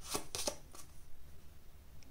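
Tarot cards being handled as a card is drawn from the deck: a quick run of papery card swishes in the first half second, then a few faint light ticks.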